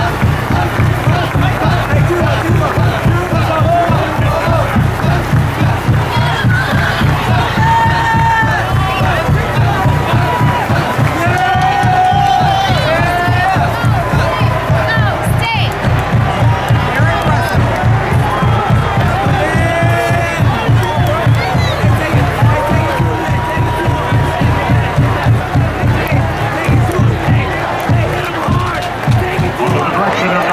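Marching band drum cadence, a fast even beat, under a cheering stadium crowd with shouts over it. The drumming stops at the very end.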